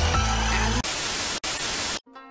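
Background music for under a second, then it gives way to a loud, even hiss like static, with a momentary dropout in the middle, that cuts off abruptly at the end.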